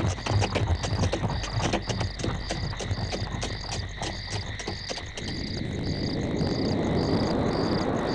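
Night chorus of frogs and insects, with a high chirp repeating about twice a second. Over it, horse hooves and the chariot clatter toward the listener for the first five seconds, then a rush of noise swells up.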